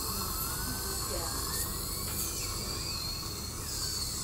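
Steady low hum and hiss of dental equipment running, with a faint thin whistle that wanders slowly up and down in pitch.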